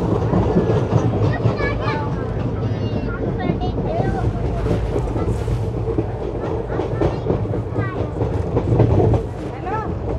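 Indian Railways ICF passenger coach running at speed, its wheels clattering over the rail joints in a steady run of clicks under the rumble of the bogies and rushing air at the open window.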